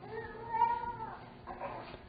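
A single high-pitched cry lasting about a second, followed by a fainter, shorter one near the end, pitched well above the preacher's voice.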